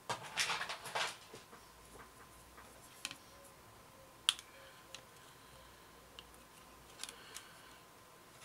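Hands rustling against a plastic model-kit wing, then a few sharp clicks and taps as wooden clothes pegs are handled and clipped on to clamp the glued parts; the loudest click comes just after four seconds in.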